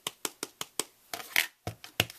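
A clear acrylic stamp block being tapped repeatedly against an ink pad to ink the stamp. It makes a quick, irregular series of sharp clicks and taps, about four or five a second.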